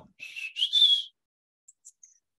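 Two short, breathy whistled notes, the second a little higher and longer than the first.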